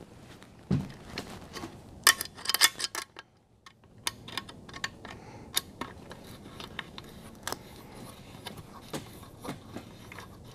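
Scattered light clicks and taps of hands working the metal battery tray and frame of a folding mobility scooter, with a quick run of clicks about two seconds in.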